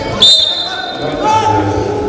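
A referee's whistle blown once, a short shrill blast restarting the wrestling bout, ringing in a large hall; voices shouting follow about a second later.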